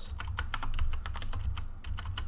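Computer keyboard typing: a quick, irregular run of key clicks as short commands are entered and the Enter key is pressed, over a low steady background hum.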